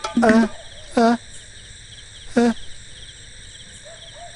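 Crickets chirping steadily as night ambience, with three short wavering vocal cries: one at the start, one about a second in, and one a little before the middle.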